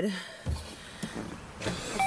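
Low rumble inside a car cabin, with a soft thump about half a second in.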